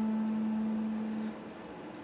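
A single low electric guitar note rings on, fading slowly, and is stopped short about a second and a half in, leaving a faint steady hum.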